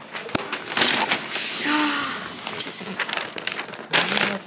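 A roll of glossy wrapping paper being handled and unrolled, rustling and crinkling, with a click about a third of a second in.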